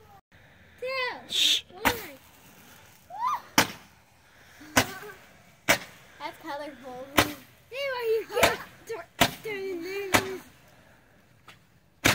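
A firework stuck in a pumpkin going off in sharp pops, about nine of them at uneven gaps of roughly one to one and a half seconds.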